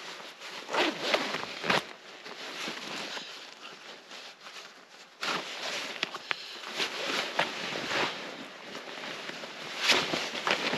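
A winter jacket being unzipped and pulled off: zipper and rustling of heavy outerwear fabric, with a sharp knock about two seconds in and busier rustling in the second half.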